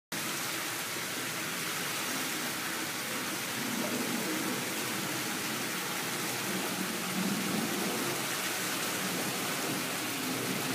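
Steady rush of running water in the beaver pool, an even hiss with no breaks.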